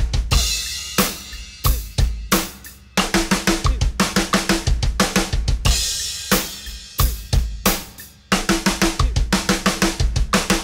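TAMA Starclassic drum kit playing a 16th-note double bass fill: runs of fast hand strokes on snare and toms alternating with pairs of bass drum kicks from a double pedal, four hand notes then two kicks. The runs are broken by cymbal crashes that ring out, and the fill is played several times over.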